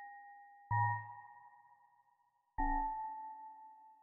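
Eurorack modular synthesizer (Doepfer A-100) playing a slow patch of single pitched notes with sharp starts and long fading tails. Two notes sound about two seconds apart, each with a deep bass tone beneath that fades quickly, over the tail of an earlier note.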